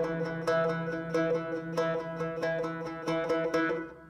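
Open-back banjo picking a repeating figure of single notes, about three a second, over a steady low drone. The picking stops just before the end and the sound falls away as the song ends.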